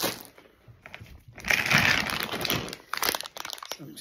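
Crinkly plastic snack packaging being handled, rustling and crackling briefly at the start and then loudly for about a second and a half from about a second and a half in.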